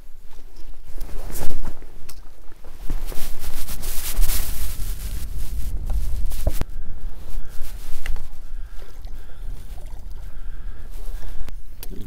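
Wind rumbling on the microphone over water splashing as a hooked bass is fought beside a bass boat, with a sharp knock about six and a half seconds in.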